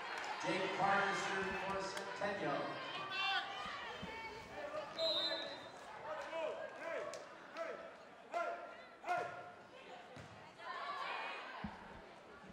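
Voices of players and spectators calling out in a school gymnasium, with thumps of a volleyball against hands and the floor and a short high whistle blast about five seconds in.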